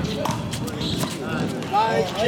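Players' voices calling out on an outdoor handball court, with a couple of sharp knocks from the rubber handball hitting the wall or ground.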